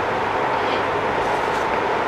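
Steady, even hiss of background room noise, with no other sound rising above it.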